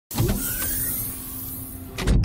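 Logo-reveal sound effect: a sudden whoosh with a faint rising whistle, ending in a hit as the logo lands.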